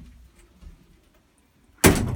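Faint low handling rumble, then a sudden loud knock near the end.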